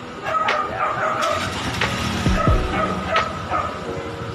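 Street traffic noise, with a vehicle going by as a strong low rumble that falls in pitch about halfway through, and short sharp sounds recurring every second or so.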